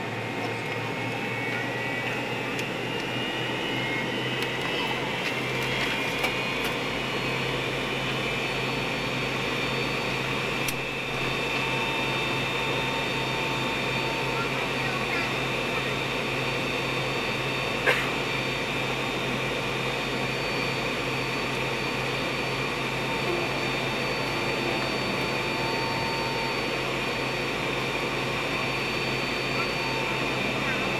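McDonnell Douglas MD-80 (Super 80) jet engines heard from inside the cabin: a whine rising in pitch over the first several seconds, then holding steady over a low steady hum. A single sharp click about 18 seconds in.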